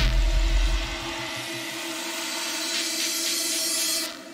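Drum and bass track in a breakdown: the drums drop out and a deep bass note fades over the first second or so. Sustained synth tones and a hissing noise swell rise slowly, then cut off sharply at the end.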